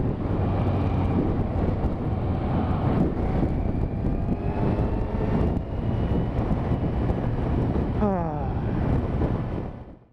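Kawasaki Z1000 inline-four motorcycle riding at speed, its engine running under heavy wind rush on the helmet camera's microphone. About eight seconds in the engine note falls as the revs drop, and the sound fades out at the end.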